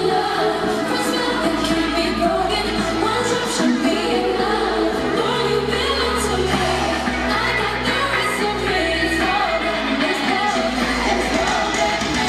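Live pop concert: a female vocal group singing into microphones over the band's track, with long, held bass notes, heard from the audience in a large arena.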